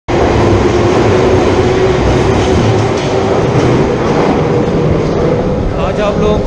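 London Underground tube train running at speed along the platform and pulling out into the tunnel: a loud, steady rumble with a whine that climbs slowly in pitch as the train accelerates.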